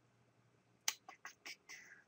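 Faint computer mouse clicks: a sharp click just under a second in, then a few softer clicks in quick succession.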